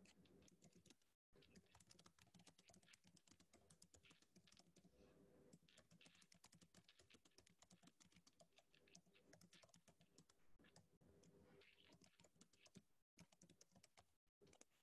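Faint typing on a computer keyboard: rapid, irregular key clicks heard over a video-call microphone.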